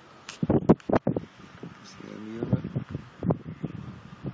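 Indistinct talking, with a few sharp knocks in the first second.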